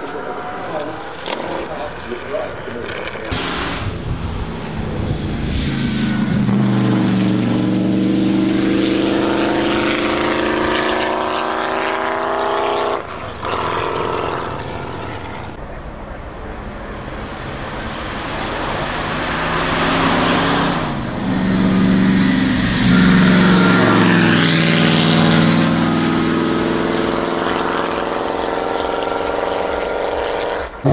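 1934 Alfa Romeo P3 Tipo B's supercharged 3.2-litre straight-eight engine accelerating hard. Its pitch rises in long pulls, with short breaks between them.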